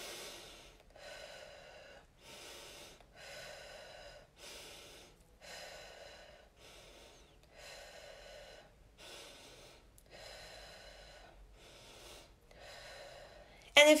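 A woman breathing deeply and audibly, in and out in a slow steady rhythm, about a dozen soft breaths of under a second each: paced deep breathing as a relaxation exercise.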